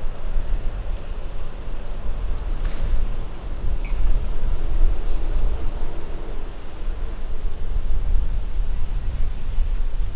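Wind buffeting the microphone: a loud, gusty low rumble that fluctuates throughout.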